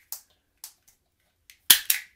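Wire stripper snapping shut on thin cable as the insulation is stripped: a few short, sharp clicks, the loudest two close together near the end.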